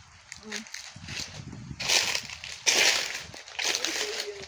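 Footsteps crunching on dry fallen banana leaves: three crackling steps about a second apart in the second half.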